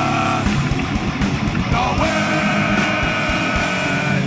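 Heavy metal band playing live, with several vocalists singing together over distorted electric guitars and pounding drums; a long held note starts about two seconds in.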